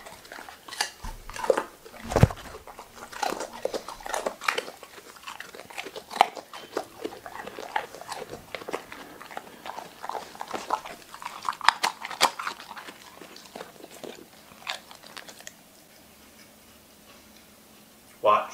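A dog crunching and chewing a treat: a quick, irregular run of crisp crunches that stops a couple of seconds before the end.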